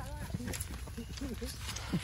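Indistinct, low-level talking of several people in a small group, with a low steady rumble underneath.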